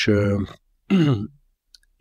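A man's speaking voice: a drawn-out "és" ("and") trailing off, then a short falling hesitation sound. A pause follows, with one faint click.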